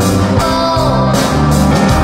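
Live rock band playing an instrumental passage: electric bass, drums, guitars and keyboards, with a lead melody line that bends and glides in pitch over sustained bass notes.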